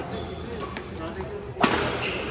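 Badminton racket striking the shuttlecock: one loud, sharp smack about one and a half seconds in, after a few lighter taps, amid voices in the hall.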